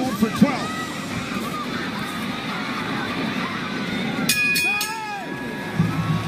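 Arena crowd noise with scattered shouts as a boxing round ends; a bell rings about four seconds in, marking the end of the round.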